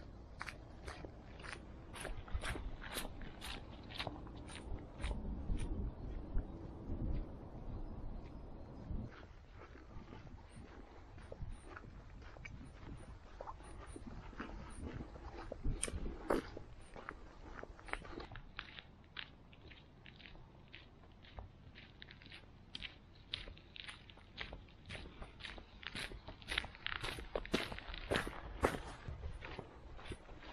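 Hiker's footsteps walking steadily along a muddy trail, about two steps a second.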